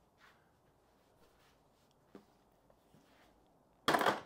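Faint handling of a plastic motorcycle fairing trim panel with a few small ticks, then a sharp snap near the end as the panel's plastic clip tabs pop free of the fairing.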